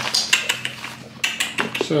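Clicks and light clatter of small hard objects, bits of packaging and kit, being handled and set down. There is a cluster of clicks at the start and a few more a little past a second in.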